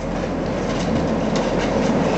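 Roar of a large EF-4 tornado passing close by: a loud, steady rushing roar of wind with a few faint knocks in it.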